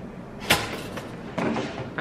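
Two knocks from kitchen items being handled on the counter: a sharp one about half a second in, the loudest, and a softer clatter near the end.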